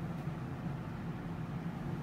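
Steady low hum with a faint even hiss from running room equipment, with no distinct events.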